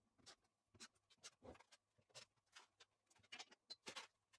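Near silence with faint, scattered light clicks and taps as small hardware is handled: screws and rails being fitted to a CNC machine table.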